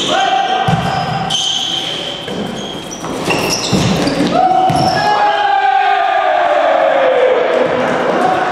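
Volleyball rally in a sports hall: the ball struck and hitting the floor, and sneakers squeaking on the court with short high squeaks. Players' voices call out, with a long falling call over the second half.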